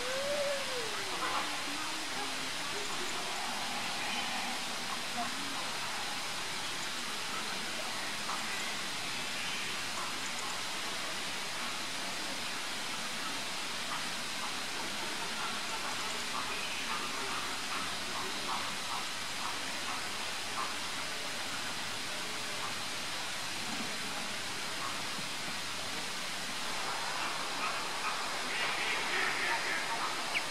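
Steady outdoor background hiss with faint, indistinct voices at times, one wavering voice-like sound in the first couple of seconds; no clear chaffinch call is heard.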